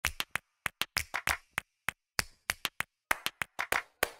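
Sharp hand claps in a quick, uneven rhythm, often in runs of two or three, with complete silence between them: a clapped intro to a music track.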